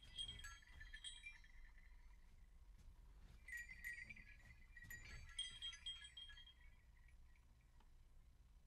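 Faint, high tinkling of small struck chimes in three clusters: at the start, around the middle, and again a second or so later, each note ringing briefly.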